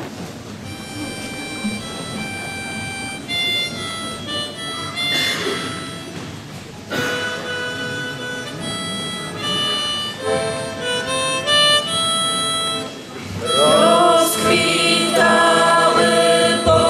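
Harmonica playing a slow solo melody of held notes. About three-quarters of the way through, the band comes in louder, with accordions and boys' voices singing.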